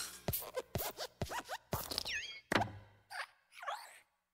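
Sound effects of the animated Pixar desk lamp (Luxo Jr.) hopping and bouncing on the letter I: a quick series of knocks and thumps mixed with short squeaky, springy creaks that glide up and down in pitch.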